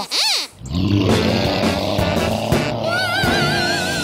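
A cartoon dinosaur roar sound effect over music: a rough, sustained roar sets in about half a second in. A high, wavering tone joins it near the end.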